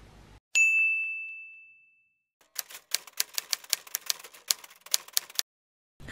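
A single bright ding that rings out and fades over about a second and a half. It is followed by about three seconds of rapid, sharp typewriter-like key clacks, a sound effect edited into the vlog's opening.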